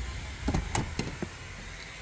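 A uPVC front door being opened: a handful of sharp clicks and clacks from its lever handle and latch about half a second in, over a steady low rumble.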